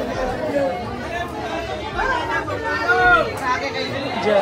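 Crowd of people talking over one another, with a louder voice calling out about two seconds in and again around three seconds in.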